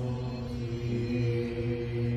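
A group of voices singing a sustained chord, each part holding a steady note on a neutral syllable so that the tones blend. The chord tones are sung in parts, as in harmonizing practice of tonic and V7 chords.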